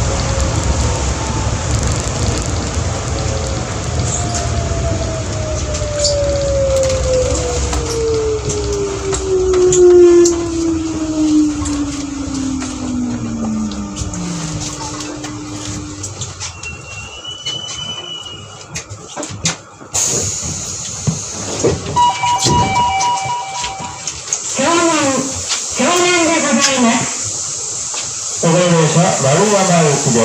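New Shuttle 1050 series rubber-tyred people-mover car braking into a station: its running rumble and motor whine fall steadily in pitch over about fifteen seconds, and the running noise drops away as it comes to a stop. About twenty-two seconds in a two-tone chime sounds, followed by an on-board announcement.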